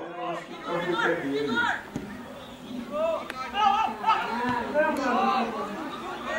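Indistinct overlapping voices calling and shouting, the chatter of players and onlookers at a football match.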